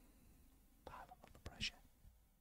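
Near silence: room tone, with a faint murmured voice and a few small clicks about a second in, then a short breathy hiss.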